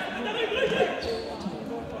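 Futsal match play in an echoing sports hall: players calling out indistinctly, with thuds of the ball on the court.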